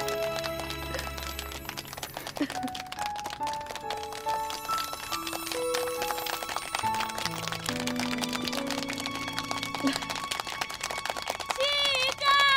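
Soft background music: a slow melody of long held notes over low sustained notes. Voices start calling out just before the end.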